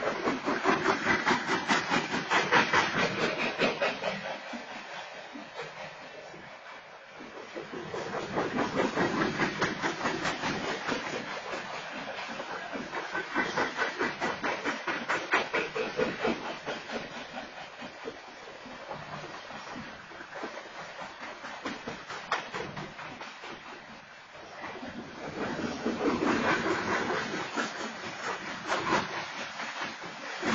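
Freight train cars rolling past: a continuous fast clatter of steel wheels on the rails with hiss, swelling and fading in waves as the cars go by.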